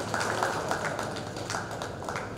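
Light, scattered applause from a few people: irregular sharp claps, about three or four a second, following the end of a speech.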